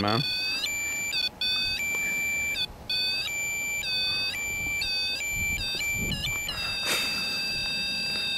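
High-pitched electronic alarm tone from a handheld ghost-hunting gadget, sounding in irregular stretches with short gaps. Each stretch starts with a quick dip in pitch. Near the end it settles into one steady unbroken tone.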